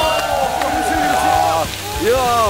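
Chicken pieces sizzling as they fry in oil in a wide pan, under a long drawn-out vocal exclamation that is the loudest sound.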